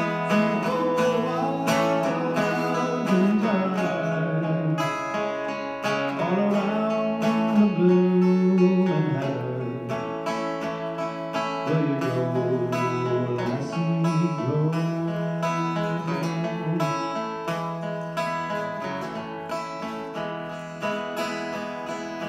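Acoustic guitar playing an instrumental passage of a slow folk melody, with steady note changes and some bent notes.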